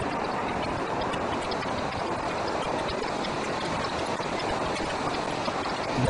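Steady rushing noise of flowing river water.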